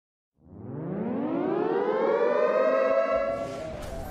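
Siren sound effect winding up: after a brief silence, one tone with many overtones rises steeply in pitch, levels off, then fades near the end as a hiss comes in.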